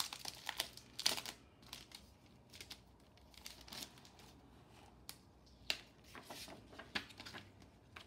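Clear plastic packaging crinkling and rustling as an embossing folder is pulled out of its sleeve by hand, busiest in the first second or so, then scattered crackles.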